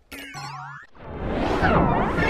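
Layered, distorted logo sound effects: a short cluster of wobbling, sliding-pitch cartoon tones in the first second, then music swelling up and growing louder toward the end.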